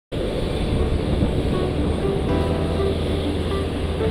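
Steady low rumble of aircraft engines, with music playing over it in short held notes.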